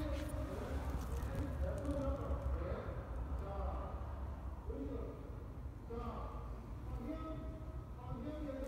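Indistinct talking voices over a steady low hum, with a quieter gap in the talk in the middle.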